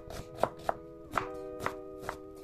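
Kitchen knife chopping a red onion on a wooden cutting board: several sharp chops at uneven spacing. Soft background music with sustained notes plays underneath.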